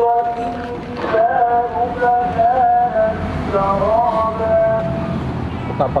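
A voice singing long, held notes that waver and slide between pitches, over a low rumble.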